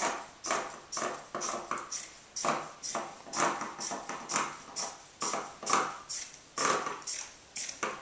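Scissors snipping through fabric, a steady run of cuts about three a second as a long strip is cut.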